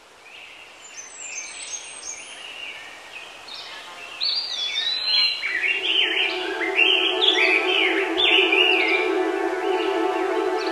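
Birds chirping and singing in quick, overlapping calls that grow louder. About halfway through, a sustained ambient synthesizer chord comes in beneath them and holds.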